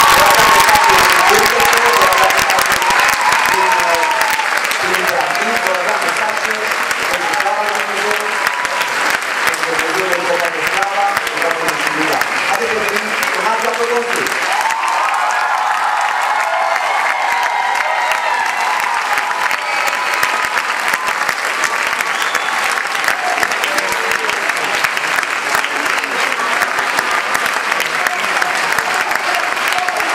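Concert audience applauding, with voices and shouts from the crowd mixed into the clapping; the applause eases a little over the first few seconds.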